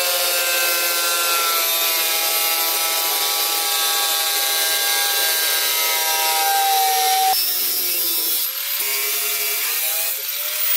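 Corded angle grinder cutting through the steel floor pan of a car's spare wheel well, a steady high whine over the hiss of the disc in the metal, shifting a little in pitch. The sound changes abruptly about seven seconds in and dips briefly near the end.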